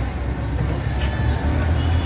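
Steady low rumble of street traffic noise.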